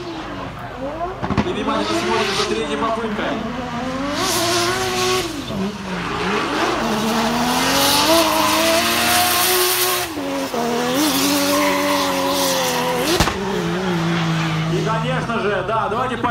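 Nissan RPS13 drift car sliding through a corner, its engine revving up and down with the rear tyres squealing. The tyre screech swells about four seconds in and again around eight to ten seconds in.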